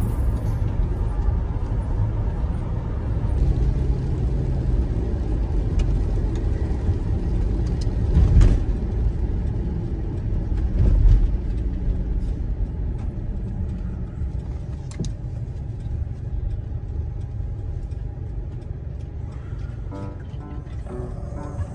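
Camper van driving on the road, heard from inside the cab: a steady low engine and road rumble, with two louder surges about eight and eleven seconds in.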